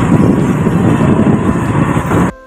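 Auto-rickshaw in motion, heard from inside the open passenger cabin: loud, steady engine, road and wind noise.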